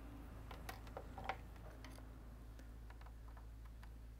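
Faint scattered small clicks, mostly in the first two seconds, over a low steady mains hum.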